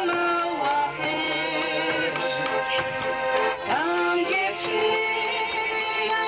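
Live folk music: accordion chords held under a singing voice whose pitch bends and glides, with faint regular drum beats.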